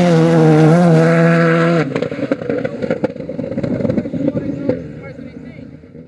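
Skoda Fabia rally car passing close at full throttle, its engine note high and wavering slightly. About two seconds in the engine note breaks off, leaving crackles and pops as the car moves away, and the sound fades out near the end.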